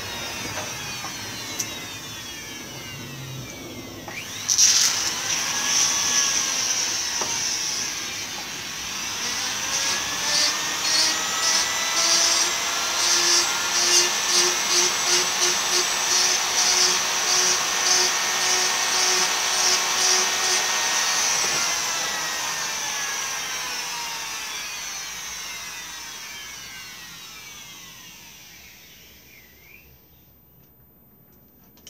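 A workshop power tool's motor running while wood is worked with it. It comes in sharply about four seconds in, pulses through the middle, then slowly fades away over the last several seconds as the motor winds down.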